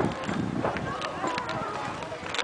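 Irregular hollow clacking knocks, footsteps on the wooden planks of a swinging bridge, with faint voices underneath.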